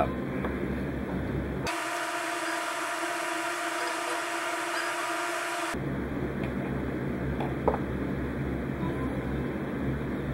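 Steady low background hum. About two seconds in, the low hum drops out and a higher hum with several held pitches takes its place for about four seconds, then the low hum returns. One light tap comes near the end.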